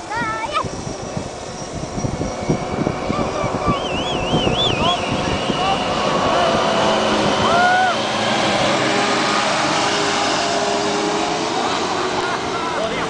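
Two farm tractors, a John Deere and a Steyr, racing at full throttle; their engine noise builds as they approach, is loudest about halfway through and holds as they pass. Crowd voices and shouts sound over it.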